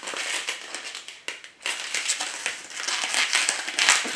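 Crinkling and rustling of the white wrapping sheet around a new camera body as it is handled and unwrapped. It comes in irregular bursts, with a short lull about a second in.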